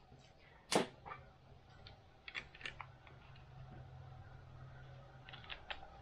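Plastic Nerf blasters being handled: one sharp click under a second in, then a few lighter ticks and knocks, over a steady low hum.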